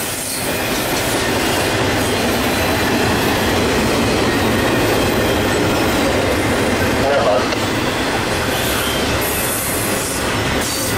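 Intermodal freight train's container and trailer cars rolling past close by: a steady rumble and rattle of steel wheels on rail. A brief wavering whine sounds about seven seconds in.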